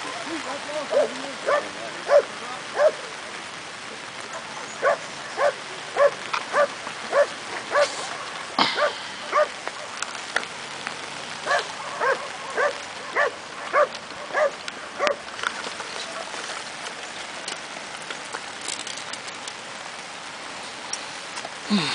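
A dog barking in runs of short barks, about two a second, stopping about three quarters of the way through, over the steady hiss of falling rain.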